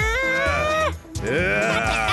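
A cartoon character's drawn-out battle cry that rises in pitch and cuts off about a second in, followed by a second wavering yell, over background music.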